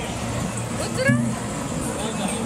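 Busy play-area hubbub: a steady din of mixed voices and background noise, with a brief rising high-pitched voice sound about a second in.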